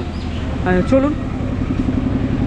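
A motor vehicle engine running close by: a steady low drone that takes on a fast, even pulse about a second in.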